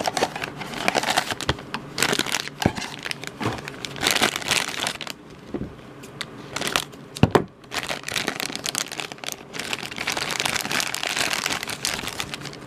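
A cardboard blind box is opened, then the black plastic foil bag inside crinkles and crackles as it is handled and pulled open, with a few sharp snaps.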